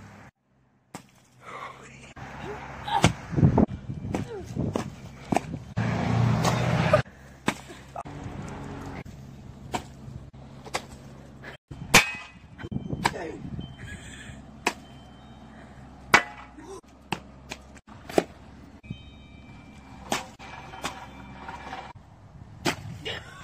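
Pumpkins thrown down and smashing on a concrete sidewalk: a series of sharp, separate impacts with a couple of longer, noisier stretches between them.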